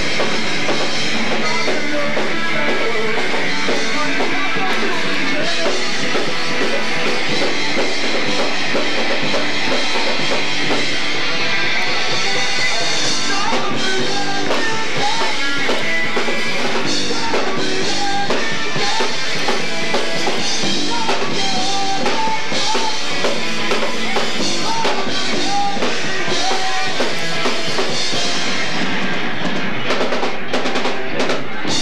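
A rock band playing live, loud and without a break: electric guitar over a full drum kit.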